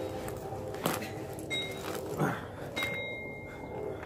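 Denim rustling and metal studs clinking as a spiked and studded denim vest is pulled off over the head, with a short falling vocal grunt about two seconds in.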